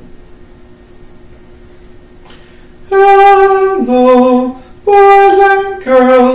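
A man singing a vocal warm-up on sustained pitches. After about three seconds with only a faint steady tone, he sings a higher note sliding down to a lower one, then repeats the higher-lower pair, each note held about half a second to a second.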